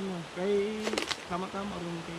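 Speech only: people talking in conversation.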